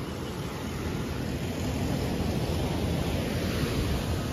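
Steady beach ambience: an even rushing noise, heaviest in the low end, of wind and surf with no distinct events.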